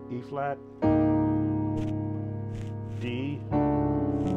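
Piano keyboard playing sustained gospel-jazz chords held on the sustain pedal: a D-flat seventh chord is struck about a second in, and a D major seven sharp-eleven over D-flat is struck near the end. A man's voice sounds briefly between the chords.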